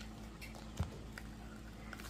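Faint handling noises: a few light clicks and taps as a small resin coaster and a sheet of paper are moved about by hand, over a low steady hum.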